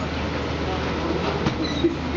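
A steady low hum with murmuring voices as passengers board through a jet bridge. Near the end come two sharp knocks as luggage is wheeled and lifted through the aircraft door.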